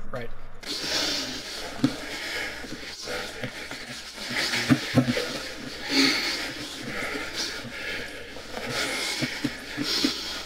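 Playback of a recorded grappling roll starts about half a second in: muffled scuffling of bodies on the mat and breathing, with a few sharp knocks and indistinct voices.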